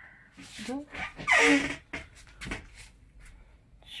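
A woman's voice in short, quiet phrases, with the loudest, breathier utterance about a second and a half in.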